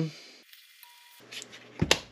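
Salt shaken from a round salt canister into a bowl of batter, heard as a few faint clicks, then a single sharp knock near the end as a container is set down on the countertop.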